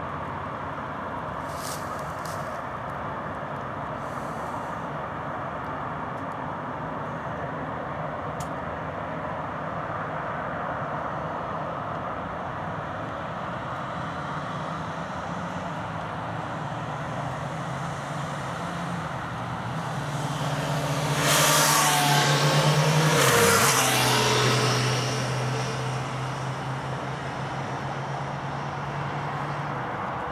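Steady dual-carriageway road traffic, with one vehicle passing close by about two-thirds of the way through, the loudest moment, its engine note dropping in pitch as it goes past.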